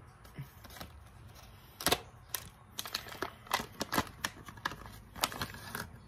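Plastic MRE food pouch being opened by hand: irregular crackling and crinkling of the packaging with scattered sharp clicks, the loudest about two seconds in and a busier run in the second half.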